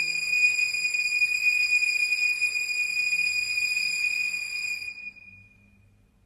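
Soundtrack drone: a steady high-pitched tone over a hiss, fading away about five seconds in and leaving a faint low hum.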